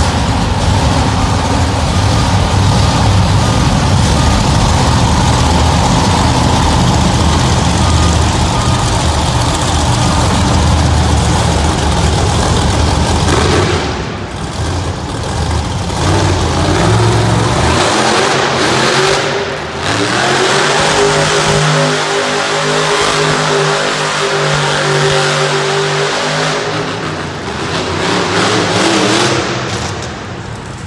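Monster truck engine revving hard during a donut run. Its note dips briefly twice near the middle, then holds at a steady high pitch through the second half.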